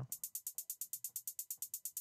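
A BandLab drum machine's 808 hi-hat playing back alone: a steady run of short, bright ticks, about ten a second, panned slightly to the left.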